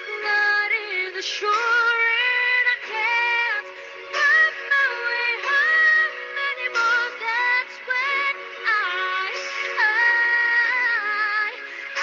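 A young woman singing a pop ballad live into a microphone, with long held notes that slide from pitch to pitch.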